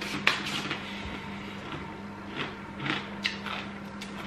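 A man chewing a mouthful of food, with a few short wet lip-smacking clicks, over a steady low electrical hum.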